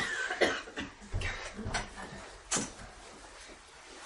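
A cough and a few short, scattered noises in a small room, with the sharpest sound about two and a half seconds in.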